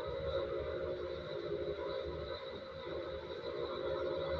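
A steady background hum with no speech, even throughout.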